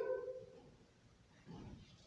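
The last word of a woman's spoken question trails off, then room hush, and about a second and a half in a faint, distant voice briefly answers, a child's reply picked up off-microphone.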